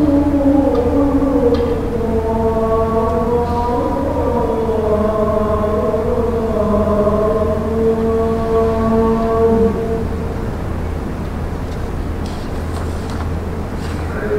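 A man's voice chanting in long, slow, drawn-out melodic notes, the longest held for several seconds before it fades about two-thirds of the way through, over a steady low electrical hum.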